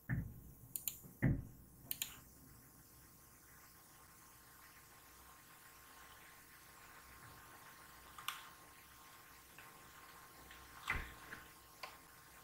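A few faint computer clicks with a low desk thump in the first two seconds, near silence through the middle, then a few more clicks near the end.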